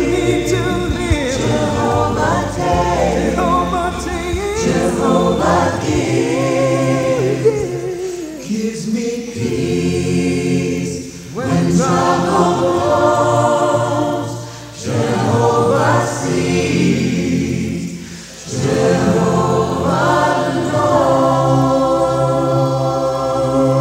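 Choir singing a gospel song in phrases of three or four seconds, with brief breaths between them in the second half.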